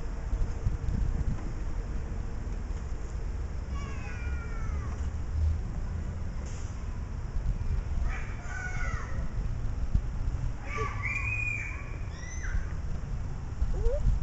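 A toddler's high-pitched squeals, a few short gliding cries about four seconds in and more between eight and twelve seconds, over a steady low rumble of wind and handling on the microphone.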